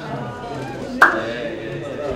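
Men's voices chatting in the background, with one sharp knock or slap about a second in that is the loudest sound.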